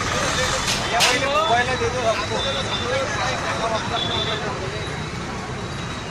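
Several people talking over a steady rumble of road traffic, with one sharp click about a second in.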